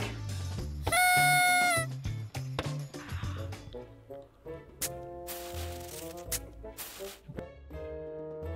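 A loud electronic buzzer tone, held for about a second and dipping slightly in pitch just before it stops, sounding about a second in as a push button in the box is pressed. Background music with a steady bass line runs underneath.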